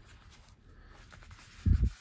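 Faint handling of a leather wallet, soft small clicks and rustle as it is opened in the hands, with a short low thump near the end.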